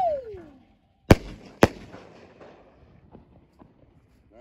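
Consumer firework artillery shell bursting overhead: two sharp, loud bangs about half a second apart, a second in, each trailing off into a fading rumble, with a couple of faint pops near the end.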